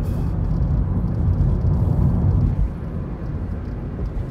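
Road noise inside a moving Toyota Prius cabin: a steady low rumble that eases slightly a little past halfway.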